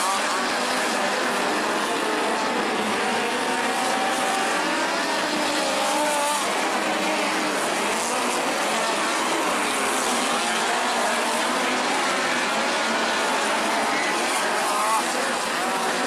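Midget race cars running laps on a dirt oval, their engines rising and falling in pitch as they circle, heard from the grandstand over crowd noise.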